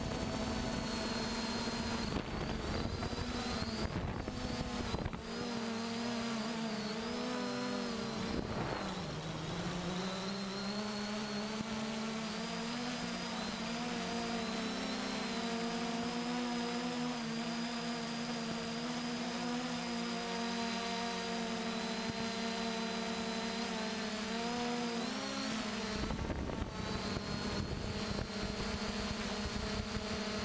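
Quadcopter drone's electric motors and propellers humming steadily, as heard from its onboard camera, the pitch wavering slightly as it holds and turns. Wind rumbles on the microphone, heavier in the first few seconds and again from about 26 seconds in.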